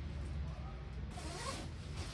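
A jacket zipper being worked and the fabric of second-hand jackets rustling as they are handled, busiest from about a second in, over a steady low hum.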